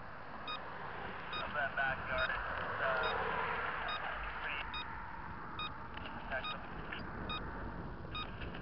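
A motorcycle's turn-signal beeper sounding a short, high electronic beep about every 0.8 seconds as the bike turns, over steady riding and wind noise.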